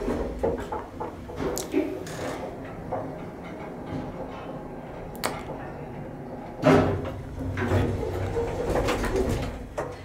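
1940s–50s Otis traction elevator running: a steady low hum from the machinery, broken by several sharp clicks. About two-thirds of the way through comes a louder clatter and rumble as the car stops at a floor.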